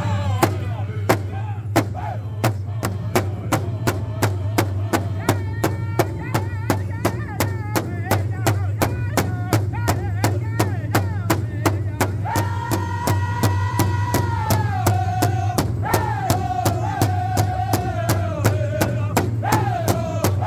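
A northern-style powwow drum group: several men strike one large hide-covered powwow drum in unison with sticks, a steady beat of about three strokes a second, while they sing a contest song in high voices. About halfway through the singers hold one long high note, then the melody steps downward.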